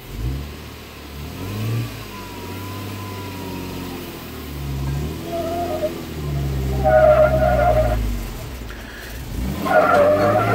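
Jeep Wrangler Sahara engine revving up and dropping back several times under heavy load on a steep rock climb. Tyres squeal on the slickrock about five seconds in, again for a second around seven seconds, and once more near the end, as the wheels fight for grip without locking differentials.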